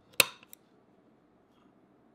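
A spring-loaded center punch, pressed down by hand, snaps once into a soft pewter bar: a single sharp, loud click, then a much fainter click just after.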